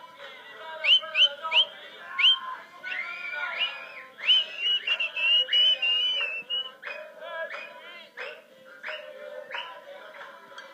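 Shrill whistling amid a celebrating crowd: four quick rising whistles about a second in, then a longer run of high, slightly wavering whistle notes, over chanting and music.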